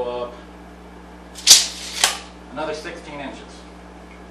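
Steel tape measure retracting: a sudden sharp start about one and a half seconds in, about half a second of whirring, then a second, smaller clack as the blade runs home into its case.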